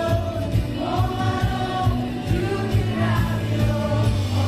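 Live worship band playing a song with sung vocals over electric guitar, bass and a steady drum beat.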